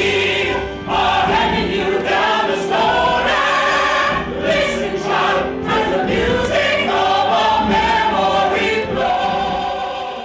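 Ensemble cast of a stage musical singing together in chorus.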